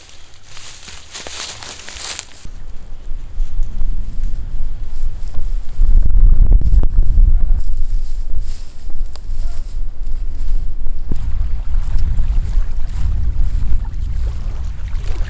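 Wind buffeting the microphone: a loud, uneven low rumble that builds after a couple of seconds and is strongest around six to eight seconds in. At the start, dry brush and branches crackle briefly.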